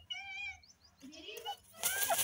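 A single short wavering, high-pitched call lasting about half a second, then a brief rising call note, and just before the end a sudden flurry of wing-flapping as a grey francolin flutters up.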